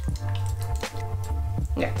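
Water poured from a plastic jug through a plastic funnel into a L'Oréal Steampod 2.0's water tank, a light trickle under steady background music.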